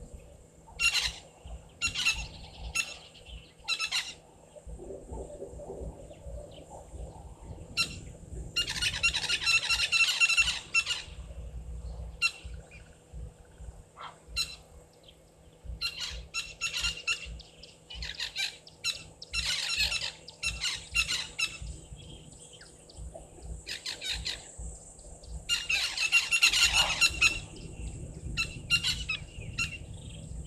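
Wild birds calling in the bushveld, with harsh, squawking calls. There are short single calls and longer bursts of a second or two, repeated every few seconds; the loudest bursts come about a third of the way in, around two-thirds, and near the end.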